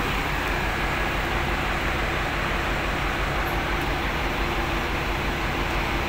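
Large diesel coach engine idling steadily, a constant low rumble with an even pulse.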